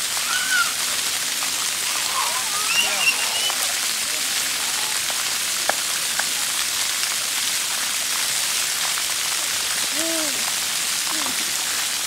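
Splash-pad fountain jets spraying up from the ground and water falling back onto wet concrete: a steady, even hiss and patter.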